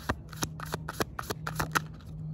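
A deck of tarot cards shuffled by hand: an irregular run of about ten quick, sharp card snaps.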